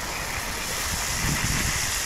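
Water running from a garden hose: a steady, even hiss of spray.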